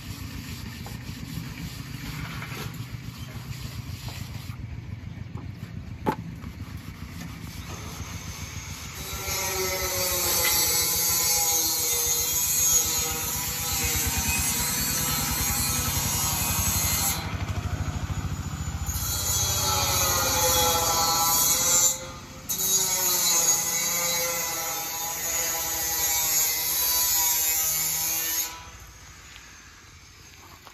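A low, steady rumble, then from about nine seconds a loud power-tool whine with a rushing hiss. The whine wavers in pitch, cuts out briefly twice, and stops near the end.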